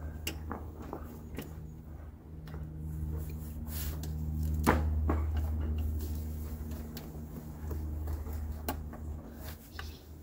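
Pliers and hands working at hoses and hose clamps in a car's engine bay: scattered clicks and handling noises, the loudest a sharp click just before the middle. A steady low hum runs underneath.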